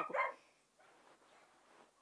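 A dog barking faintly in the background of a farmyard, with a woman's voice ending its last word at the start.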